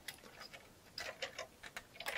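Faint, light clicks of plastic LEGO parts as the assembled Quinjet model is handled on a stone countertop, about half a dozen small ticks at uneven spacing.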